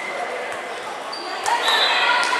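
Futsal ball being kicked and bouncing on a wooden gym floor, with a sharp impact about one and a half seconds in. Behind it is the echoing hall chatter and shouting of players and spectators.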